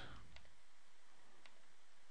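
Two faint computer mouse clicks, about a second apart, over a low steady hiss of room tone.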